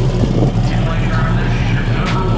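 A drag car's engine running with a steady low rumble, with crowd voices over it.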